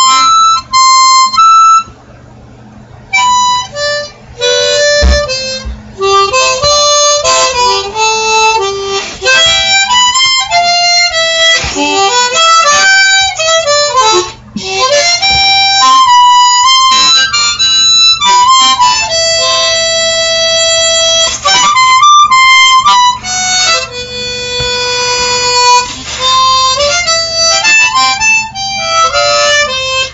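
Solo harmonica playing a melody: quick runs of cupped, reedy notes, a short break near the start and another in the middle, then long held notes in the second half.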